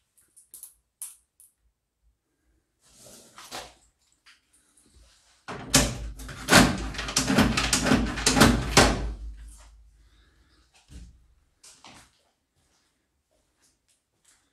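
A hinged lid on a wall-mounted box on a tiled wall being worked by hand, clattering and banging over and over for about four seconds from about five seconds in. A few lighter clicks and knocks come before and after.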